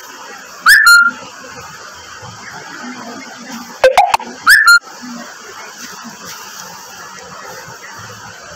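Short, loud whistle-like calls that sweep up in pitch: one about a second in, then two more close together around the middle.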